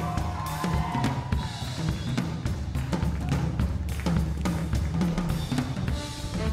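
Live band vamp: a drum kit playing a busy beat over a plucked upright bass line.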